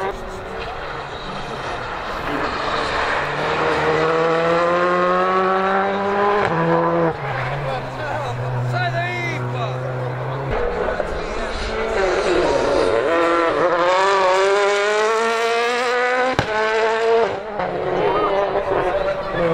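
Rally car engine revving hard on a stage, its pitch climbing through the gears with steps at the shifts, holding steady for a few seconds, then climbing again. A single sharp crack comes near the end.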